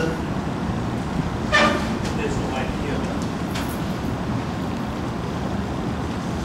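Steady background noise, with one short pitched toot about one and a half seconds in.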